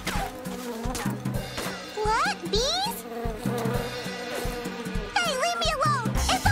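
Buzzing of a swarm of cartoon stinging insects from a disturbed nest, a steady drone, over a rhythmic low music line, with short squeaky gliding cries about two seconds in and again near the end.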